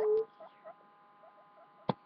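Guinea pig held close to the microphone: a short squeak trailing off at the start and a couple of faint squeaks after it, then quiet and a single sharp click near the end.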